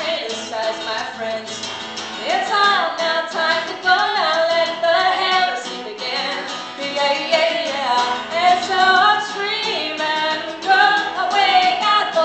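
A woman sings a fast punk song to her own strummed acoustic guitar, the voice leaping and sliding over a steady, driving strum.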